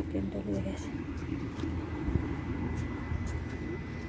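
Steady low rumble of a motor vehicle, with faint murmured voices in the first second and one soft thump about two seconds in.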